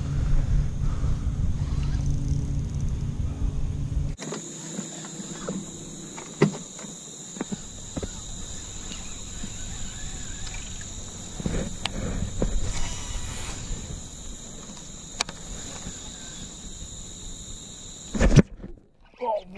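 A steady low hum for about four seconds. It cuts off sharply, giving way to a quieter outdoor background with a steady high-pitched drone and a few light clicks.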